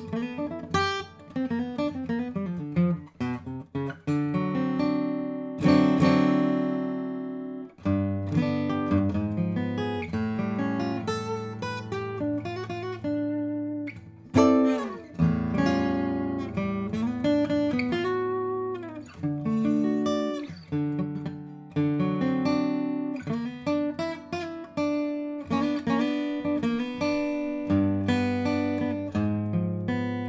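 1995 Santa Cruz D-45-style dreadnought acoustic guitar with Brazilian rosewood back and sides and a German spruce top, strung with mid-tension strings, played solo: a run of picked single notes and chords with a few slides. One full chord about six seconds in rings out for a couple of seconds.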